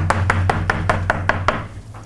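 Chalk tapping rapidly on a blackboard, about seven sharp taps a second, stopping about one and a half seconds in, over a low steady hum that stops with them.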